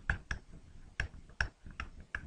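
Sharp, irregular clicks and taps, about eight in two seconds, from a digital pen striking its writing surface as the word 'intersect' is handwritten.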